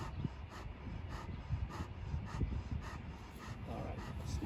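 Saint Bernard panting, short breaths about three a second.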